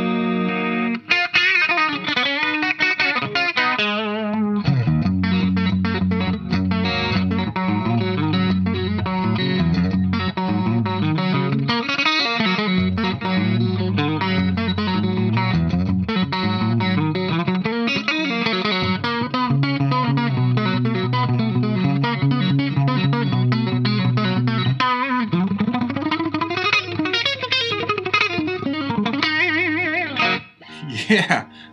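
Washburn N4 electric guitar with a Floyd Rose tremolo and FU-Tone brass big block, played through a clean amp channel: chords and long-held notes that ring and sustain. Near the end a few notes glide in pitch.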